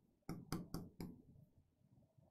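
Chalk knocking against a blackboard as words are written: four sharp taps in quick succession in the first second, then quiet.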